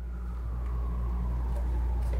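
A steady low hum that grows slightly louder, with a faint thin whine above it and a couple of soft ticks.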